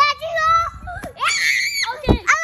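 Children's high-pitched voices with no clear words, rising to a loud, high shriek about a second in that lasts about half a second.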